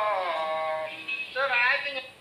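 A voice singing slowly in long held notes that bend and glide in pitch, a folk-style sung chant, with a short break about a second in.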